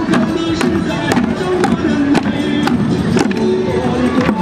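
Music: a melody over a steady beat of sharp drum strikes, about two a second.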